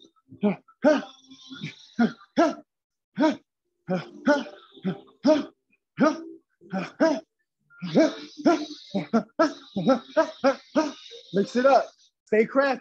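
A man's short, sharp voiced grunts, one with each punch as he shadowboxes, coming in quick runs of two to four with brief pauses between.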